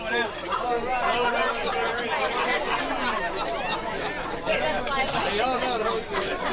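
Chatter of many diners talking at once in a crowded dining room: overlapping conversations with no single voice standing out.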